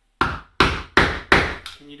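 Hammer striking the edge of a door near the latch: five quick, sharp blows, a little over two a second, each ringing briefly.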